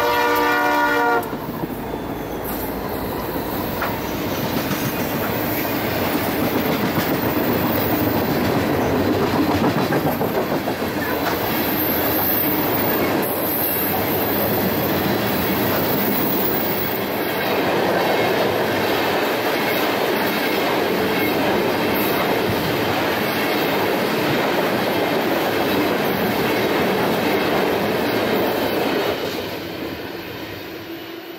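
Air horn of a Norfolk Southern freight train led by an SD60I diesel locomotive, sounding a steady chord that cuts off about a second in. After it, the locomotives and freight cars roll past with a loud, steady rumble that starts to die away near the end.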